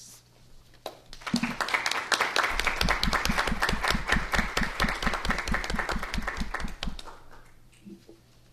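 Audience applauding. It starts about a second in and dies away near the end, with one set of louder, evenly paced claps standing out in the middle.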